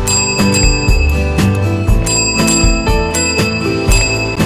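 Chrome desk call bell pressed by a dog's paw, ringing twice about two seconds apart, each ring fading slowly. Background music with a steady beat plays throughout.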